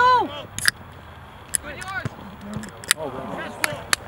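Raised voices shouting across a soccer field during play, with a loud high call right at the start and fainter calls about two and three seconds in. A few short, sharp clicks are scattered through.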